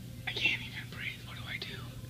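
A man's high, breathy, wordless vocalizing that glides up and down in pitch for about a second and a half, over a steady low hum.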